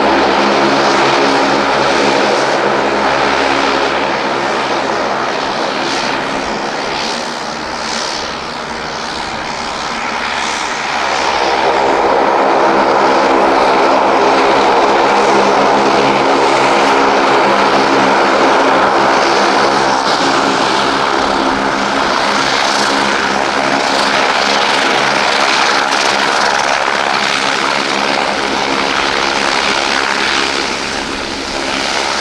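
Saab 340 taxiing on its two General Electric CT7 turboprops: a steady propeller hum with the whine of the turbines over it. The sound dips a little about eight seconds in, then grows louder from about twelve seconds on.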